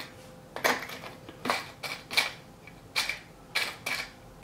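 Small electronic components and a plastic parts container clattering as someone rummages through them: a run of light, irregular clicks and rattles.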